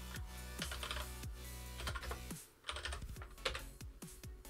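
Computer keyboard typing in short runs of keystrokes over electronic background music with a heavy bass beat.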